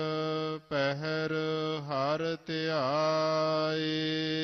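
Gurbani chanted in a slow, melodic recitation, with notes held and gliding up and down. It breaks off briefly twice and ends on a long held note.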